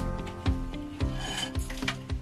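Background music with a steady beat, about two beats a second. A brief rasping sound comes in about halfway through.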